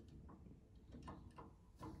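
Near silence, with a few faint, scattered ticks from a damper-regulating tool being handled among an upright piano's action parts.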